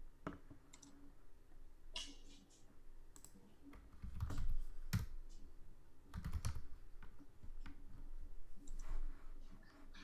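Computer keyboard being typed on in short runs of clicking keystrokes, as ticker symbols are keyed into trading software, with a few heavier dull thumps about four and six seconds in.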